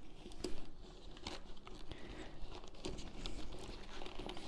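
Faint rustling of bag fabric and soft bumps and clicks as a mirrorless camera is pushed into a padded sling-bag compartment.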